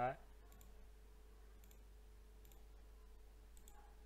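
Several faint computer mouse clicks, roughly a second apart, over a faint steady hum.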